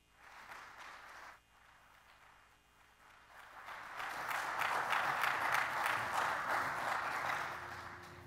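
Audience applause, soft at first, swelling about three seconds in and tapering off near the end.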